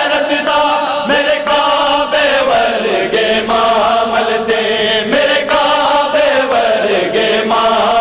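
A group of men chanting a Punjabi noha (Shia lament) in unison, holding long notes, with regular chest-beating (matam) slaps keeping time.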